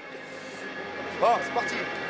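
Stadium ambience: a steady wash of background noise with faint music, and a single short shouted "ah!" just over a second in.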